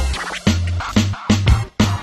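Channel logo sting: a short electronic hip hop jingle with turntable-style scratching and heavy bass hits about twice a second.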